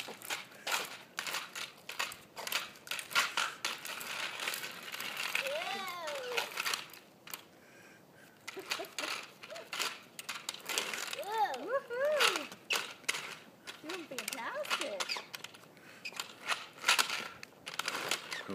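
A toddler's plastic toy roller skates clattering and scraping over pavement in irregular clicks as she is walked along, mixed with shuffling footsteps. A few short high voice sounds from the child come about six seconds in and again around eleven to fifteen seconds.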